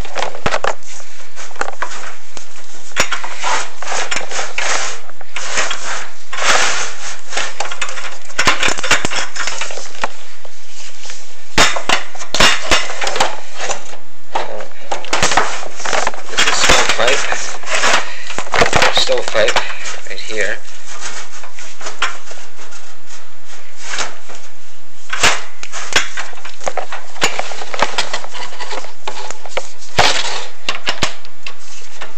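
Inspection camera and its push rod scraping and knocking against the inside of a metal wood-stove flue as it is fed down the pipe, in irregular bursts of scraping with sharp clicks, thinning out in the last third.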